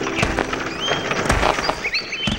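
Cartoon sound effects of shovel digging in soil: a few short dull thumps spread across the two seconds, with brief high bird-like chirps about halfway through.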